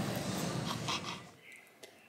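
Knife and fork cutting a pizza on a wooden board, light scrapes over restaurant room tone, fading to near silence a little past halfway.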